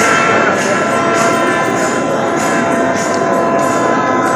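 Kerala temple festival music: wind instruments holding long steady notes over drums and cymbal beats, with a crowd underneath.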